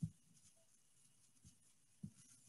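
Near silence, with one brief soft sound right at the start.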